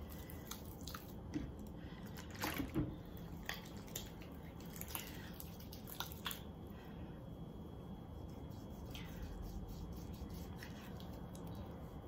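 Wet hands rubbing foaming facial cleanser between the palms and over the skin: scattered faint wet clicks, most of them in the first half, over a low steady hiss.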